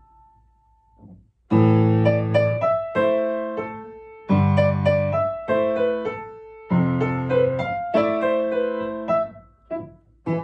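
Piano playing: a held note fades away over the first second and a half, then loud chords with deep bass notes come in, struck afresh every couple of seconds under a quick melody. Near the end the playing breaks into short, separate notes.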